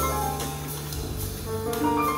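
Jazz trio playing live: piano notes over double bass and a long held low note, with light cymbal strokes from the drum kit.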